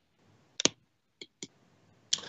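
A few faint, sharp clicks on a quiet background: a close pair about half a second in, then two single clicks around one and a half seconds.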